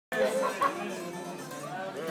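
Live Greek taverna music from a bouzouki and a guitar, with voices over it.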